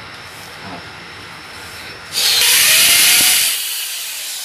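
Corded power drill run against a rendered wall in one burst of about a second and a half, starting about two seconds in.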